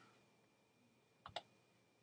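Near silence, broken a little over a second in by one faint, quick double click from the computer, as a key is pressed and released.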